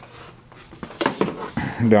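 Brief rustling and clicking handling noise about a second in, as the heater and camera are moved, followed by a man's voice near the end.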